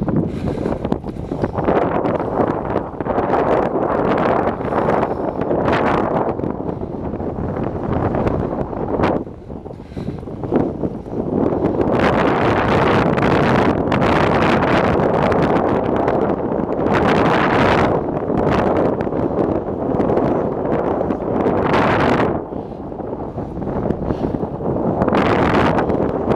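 Wind buffeting the microphone of a camera on a moving bicycle: a loud rushing noise that surges and eases, dropping away briefly about nine seconds in and running louder from about twelve seconds on.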